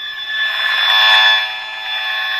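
Handheld RF (high-frequency radiation) meter's audio output, held to a microphone, giving a harsh, steady electronic buzz. It is the pulsed signal of a nearby mobile-phone transmitter made audible, with the meter reading in the red range. The buzz is loudest about a second in.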